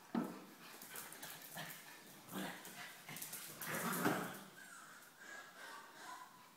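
Young puppies playing and giving a few short barks and whimpers, with a sharp sound just after the start and the loudest burst about four seconds in.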